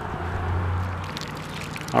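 Water dripping and trickling off a crayfish trap just lifted from a pond, with a low hum lasting about a second near the start.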